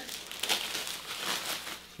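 Bubble wrap crinkling in a run of irregular crackles as it is pulled and handled inside a cardboard box, loudest about half a second in and dying away toward the end.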